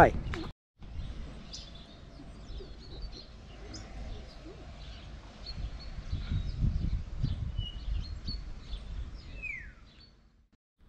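Small birds chirping and calling here and there, with a falling call near the end, over a low outdoor rumble.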